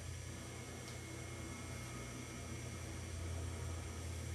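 Low, steady hum with an even background hiss: room tone with no distinct event.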